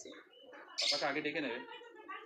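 A brief spoken utterance from a person, beginning about a second in after a short quiet moment.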